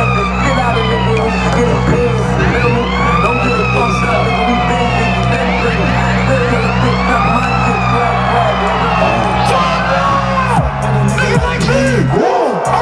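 A siren-like sound effect over a concert PA system: slow sweeping tones rising and falling every couple of seconds over a sustained low bass drone. The bass drops out briefly near the end.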